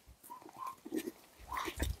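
Small dogs making faint, scattered snuffling and mouth noises as they nose at a hand and take food from it.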